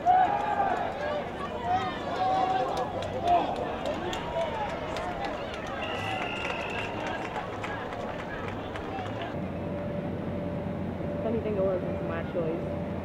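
Players and sideline voices shouting on an outdoor football field as the ball is snapped and the play runs, with short untranscribed calls and yells over open-air stadium noise.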